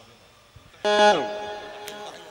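Electronic keyboard (synthesizer) sounding a sudden sustained note about a second in, with one voice of it bending down in pitch while the rest holds, then fading away.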